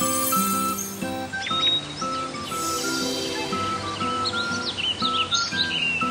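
Light background music with bird chirps and tweets laid over it, the chirps busiest in the second half.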